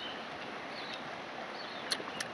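Quiet forest ambience: a steady background hiss with a few faint, short bird chirps, and one sharp click near the end.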